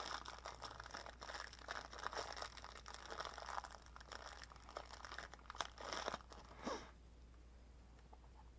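Thin plastic bag crinkling and rustling as small plastic toy parts are worked out of it: a faint, dense run of little crackles that dies down about seven seconds in.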